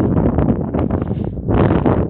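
Wind buffeting a phone's microphone: a loud, rough rumble with rustling that swells and eases unevenly.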